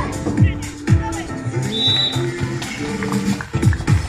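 Electronic dance music with a steady kick-drum beat, about two beats a second, under held synth notes.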